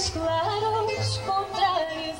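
A woman singing long notes with vibrato and sliding ornaments over acoustic guitar accompaniment with plucked bass notes, in a Portuguese folk style.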